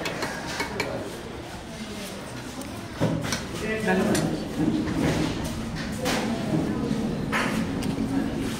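Indistinct voices talking, with a few sharp clinks of steel plates and bowls; the voices grow stronger after about three seconds.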